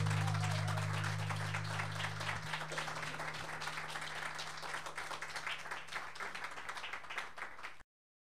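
Audience clapping and applauding as the last acoustic guitar chord rings on and fades out over the first couple of seconds; the applause cuts off suddenly near the end.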